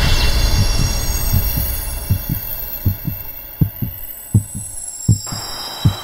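Heartbeat sound effect: paired low lub-dub thumps repeating evenly, roughly 80 beats a minute. Under it, music with a high sustained tone cuts off suddenly about five seconds in, and a low rumble fades over the first two seconds.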